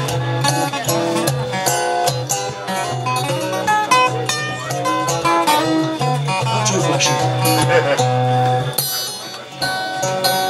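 Two acoustic guitars playing a fingerpicked instrumental duet, with low bass notes under a picked melody line.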